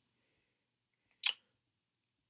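Near silence broken by one short, sharp click about a second and a quarter in.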